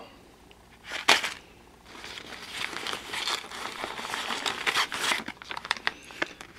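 Packaging crinkling and rustling as a hand rummages for sample packets in a bag. There is a short burst about a second in, then steady crinkling with many small crackles from about two seconds on.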